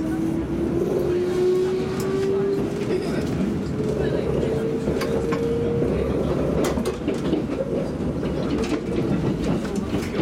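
Kintetsu limited express train heard from inside the car as it pulls away, running with a steady rumble. A single motor whine rises slowly in pitch for about the first six seconds as the train gathers speed. Sharp clicks from the rails are scattered through it.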